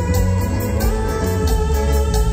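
Live band playing dance music, with a heavy bass line under a quick, steady beat.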